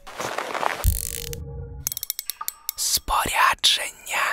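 Edited sound effects: a whoosh with a low hit about a second in, then a fast run of sharp mechanical clicks and ratchet-like ticks over the last two seconds.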